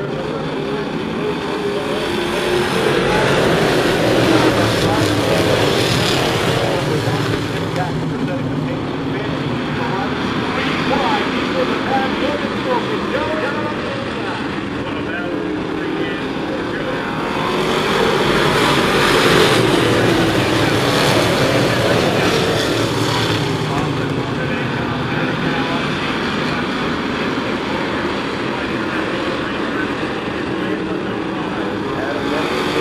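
A field of Sportsman stock cars racing, their engines running hard. The sound swells twice, about three seconds in and again near the middle, as the pack goes by, and the engine notes bend up and down in pitch as cars pass.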